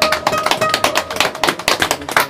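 A small audience clapping in quick, irregular claps, over a single electric guitar note left ringing that fades out partway through.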